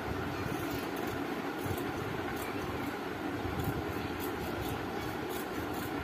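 Scissors cutting through stiff buckram: a string of short, faint snips, over a steady background whir like a fan.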